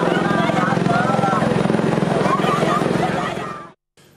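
An engine running steadily with a fast, even pulse, people talking faintly over it; it fades out shortly before the end.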